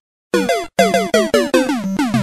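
Short electronic synthesizer jingle in a video-game style: after a brief silence, a quick run of about eight short blips, each sliding down in pitch.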